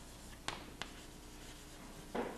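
Chalk writing on a chalkboard: faint strokes with two sharp taps of the chalk on the board, about a third of a second apart, near the middle.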